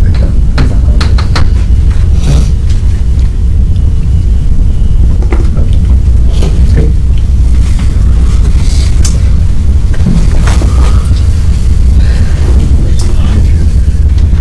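Chalk tapping and scraping on a blackboard in the first two or three seconds, over a steady low room hum; after that only scattered soft rustles and faint murmurs over the hum.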